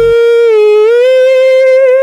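A solo voice holding one long sung note, the drawn-out "pee" at the end of a line, with no accompaniment; the pitch lifts slightly about a second in. The backing music drops out just as the note begins.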